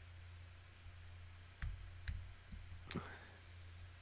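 A few faint computer mouse clicks, spaced about half a second apart, over a low steady hum.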